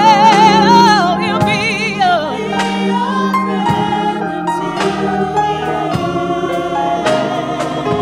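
Small women's gospel choir singing, with wide vibrato on the held notes, backed by a drum kit.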